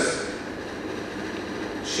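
A pause in a man's speech: steady background noise of the room picked up by his microphone, with his voice coming back right at the end.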